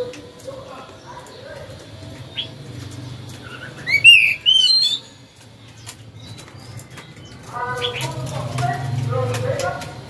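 Oriental magpie-robin giving a brief burst of loud, rising whistled song notes about four seconds in.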